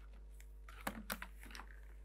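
Plastic set squares being set down and shifted on paper on a drawing board: a quick cluster of light clicks and taps about a second in, the sharpest near the middle.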